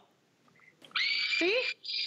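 Scrub Go cordless handheld power scrubber switching on about a second in: a steady high-pitched motor whine as its microfiber pad works on a stainless steel refrigerator door, cutting out for an instant and picking straight back up.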